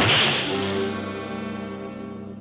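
Cartoon sound effect: a sudden whip-like crack right at the start, then a held musical chord that rings on and slowly fades away.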